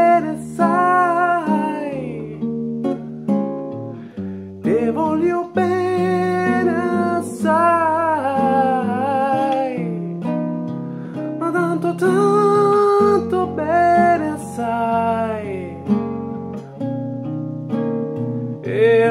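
A man singing with his own acoustic guitar accompaniment, in long held vocal notes that slide between pitches over steady guitar chords.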